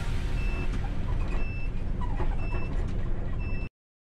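Ceres bus engine and road rumble heard from inside the cab, with a high electronic beep repeating about once a second; the sound cuts off suddenly near the end.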